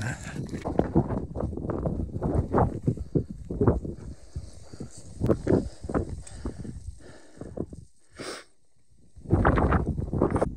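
Footsteps crunching on loose stones of a scree path, at a steady walking pace of about two steps a second. Near the end the sound drops away briefly, then wind buffets the microphone with a low rumble.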